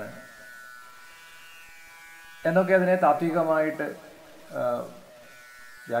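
A man lecturing in Malayalam into a microphone, pausing for the first two seconds and then speaking in two short phrases. A steady electrical buzz sits underneath the whole time.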